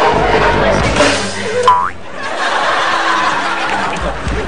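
A short cartoon-style sound effect, a quick pitched sweep, about halfway through. Background music runs under it and drops briefly just after.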